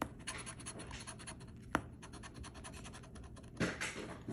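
Coin scraping the latex coating off a scratch-off lottery ticket in quick repeated strokes, with one sharper click a little under two seconds in.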